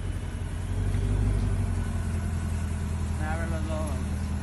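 Lamborghini Urus twin-turbo V8 engine running at low speed as the SUV rolls up close, a steady low rumble that swells about a second in.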